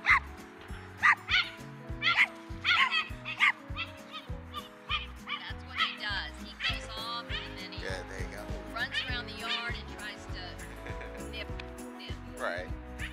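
A dog barking in a quick run of short, sharp barks, then whining in drawn-out, wavering cries. The dog is worked up at the other dog and has not yet calmed down.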